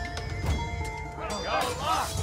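Drama score with long held notes, and about one and a half seconds in a horse whinnies, its quavering call rising and falling over the music.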